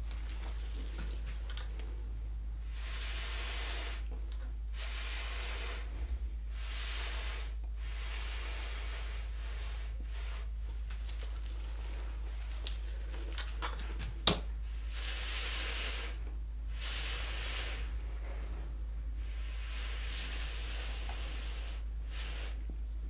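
Puffs of breath blown through a straw onto wet acrylic paint, heard as about eight separate hisses of roughly a second each. A steady low hum runs underneath, and there is a single click a little past halfway.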